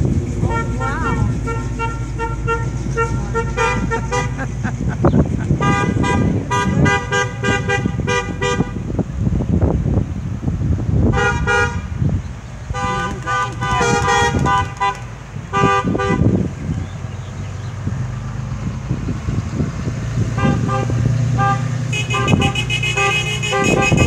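Car horns honking over and over as a line of cars drives slowly past, with the low sound of their engines underneath. The honks come in bunches of short and longer toots: through most of the first nine seconds, again around the middle, and steadily over the last few seconds.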